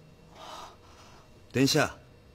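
A short, breathy intake of breath about half a second in, followed near the end by a man starting to speak, louder than the breath.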